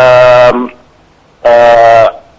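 A man's voice over a telephone line making two drawn-out hesitation sounds, 'aah', each about half a second long and about a second apart, held at a steady pitch.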